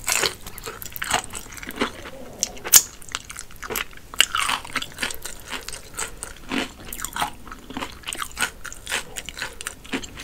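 Close-miked chewing of a mouthful of crispy fried chicken, the breading crunching in irregular sharp crackles, the loudest about three seconds in.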